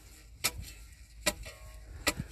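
A long-handled metal spade blade chopping down into dry clods of stony garden soil to break them up fine: two sharp strikes less than a second apart.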